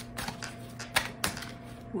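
A deck of tarot cards being shuffled by hand: a few sharp card snaps and taps, in pairs about a quarter second apart, over a faint steady hum.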